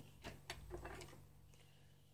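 Near silence with a few faint clicks in the first second, from small handling contacts on a smartphone's metal midframe and lifted display panel.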